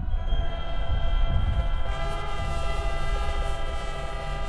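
Marching band brass section, with sousaphones, holding one long sustained chord, with more high notes joining about halfway through.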